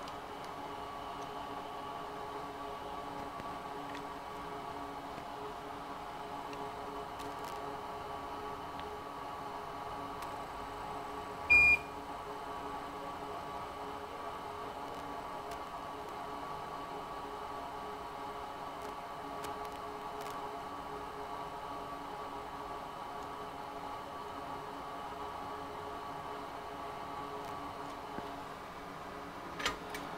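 Steady electrical hum from rework-bench equipment, made of several level tones, while the pads are wicked with a soldering iron and copper braid. One short, loud electronic beep sounds partway through.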